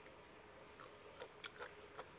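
Near silence with a few faint crisp snaps and rustles a little past a second in: leafy greens being plucked by hand from a fresh bunch.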